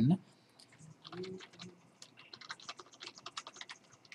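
Computer keyboard being typed on: a run of quick, light keystrokes starting about halfway through, as sign-in details are entered. A faint voice is heard briefly about a second in.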